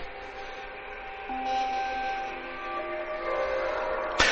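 Soft background music of held chords, the notes changing a few times.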